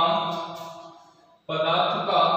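Chant-like music: two long held notes, each starting suddenly and fading away over about a second and a half.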